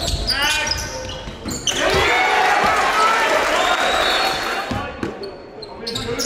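Basketball game sound on a hardwood court: the ball bouncing a few times, with players' and spectators' voices.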